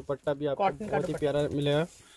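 A person's voice talking, the words not made out, stopping just before the end.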